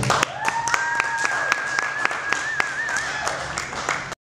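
The acoustic guitar's last chord breaks off, then a small audience claps with separate, countable claps. A long, high cheer is held over the claps and wavers before it stops near the end.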